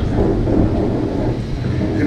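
Low, steady rumble of wind buffeting an outdoor microphone, with a man's voice faint underneath.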